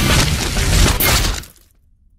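Glass-shattering sound effect with a sharp crash about a second in, dying away about a second and a half in.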